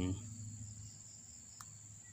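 Steady high-pitched insect call holding one tone, with a faint click about one and a half seconds in.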